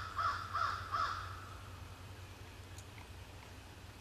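A crow cawing four times in quick succession, the calls ending about a second in.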